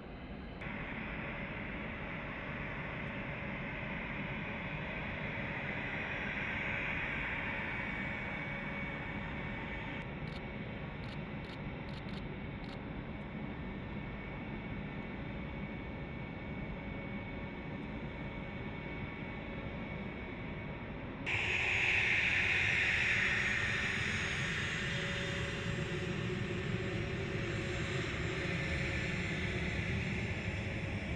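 Twin General Electric TF34 turbofan engines of A-10 Thunderbolt II jets running at taxi power: a steady high whine over jet rush. The sound gets abruptly louder about two-thirds of the way through.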